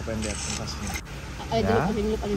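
People's voices: a short stretch of talk near the end, over a steady low hum. There is a soft brief rustle or scrape in the first second.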